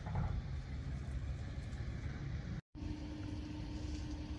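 Low, steady rumble of a vehicle engine running as it moves slowly. The sound cuts out for a moment about two-thirds of the way in, and when it returns a steady hum runs under the rumble.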